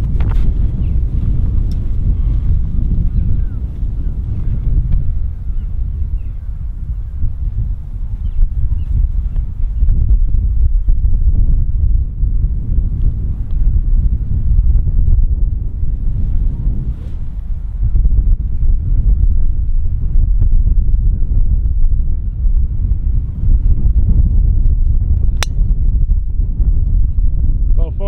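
Wind buffeting the microphone in uneven gusts, then near the end a single sharp crack of a golf club striking the ball off the tee.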